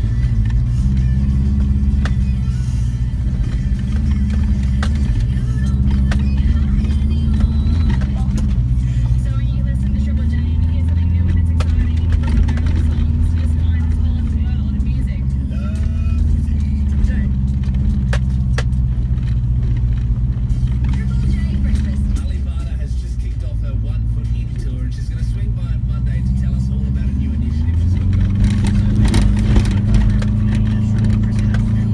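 2004 Subaru Forester's flat-four engine heard from inside the cabin, pulling steadily up a rough dirt climb; it eases off a little a few seconds before the end, then picks up again. A few brief knocks are heard along the way.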